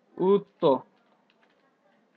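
Two short spoken syllables near the start, then a few faint clicks of computer keyboard keys as a word is typed.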